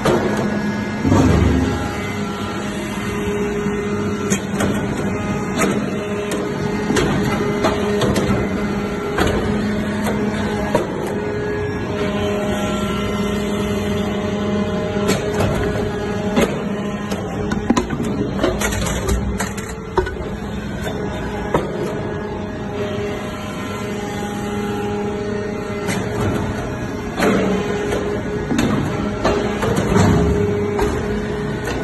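Hydraulic briquetting press for metal chips running: a steady hum from its hydraulic pump unit, with scattered clicks and knocks as the press cycles and pushes out compacted briquettes.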